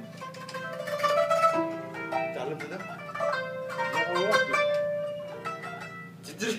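A qanun being plucked with finger plectra: a quick melodic run of plucked notes that ring on over one another.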